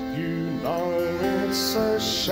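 A man singing a slow folk ballad over held instrumental accompaniment, his voice sliding between notes.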